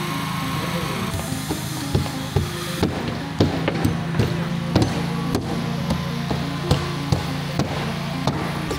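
Claw hammers driving nails into plywood roof sheathing, irregular sharp knocks at a few different spots. Background music runs steadily underneath.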